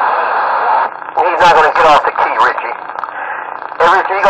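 Voices coming through a CB radio's speaker, narrow-sounding over a bed of static hiss. One noisy transmission cuts off about a second in, and another voice then talks in short phrases.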